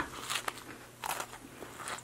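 Mouth-close chewing of a s'more, with a few soft crunches of graham cracker between quiet pauses.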